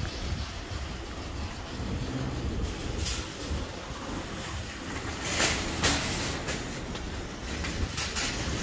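Steady low outdoor rumble with a few short clattering noises about three, five and a half and seven and a half seconds in.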